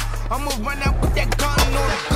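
Hip-hop beat with a steady deep bass, mixed with a skateboard's wheels rolling and the board clacking on a concrete street course.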